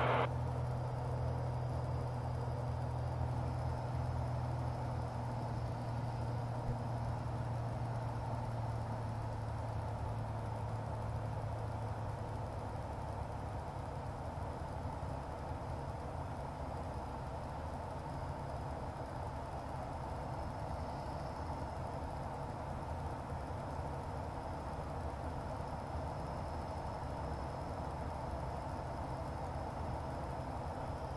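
Steady drone of a Sonex Waiex's Corvair 3.0 air-cooled flat-six engine and propeller heard inside the cockpit during a descent, with a faint high whine above it. A low hum in the drone fades out about 13 seconds in.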